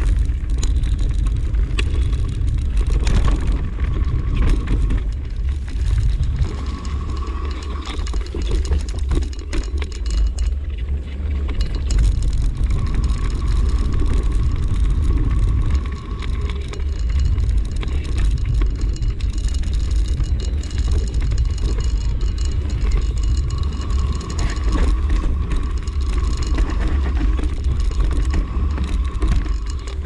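Mountain bike riding fast over a dirt forest trail: constant wind rumble on the mic, the bike rattling and knocking over roots and stones, and a high buzz that comes and goes several times.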